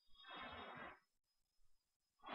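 Near silence, with one faint, brief sound lasting under a second just after the start.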